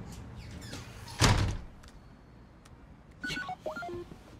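A single dull thump about a second in. Near the end, a laptop video-call tone starts: a short run of electronic beeps and a rising chirp.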